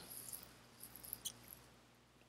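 Near silence: quiet room tone in a pause, with a few faint soft ticks about a second in.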